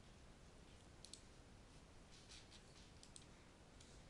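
Near silence with a few faint computer mouse clicks, some in quick pairs.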